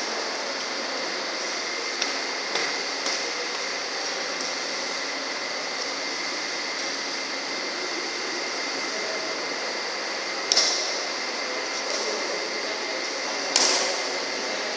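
Badminton rackets hitting a shuttlecock during a rally: a few sharp smacks that echo in the hall, the two loudest in the last few seconds, over a steady background hum.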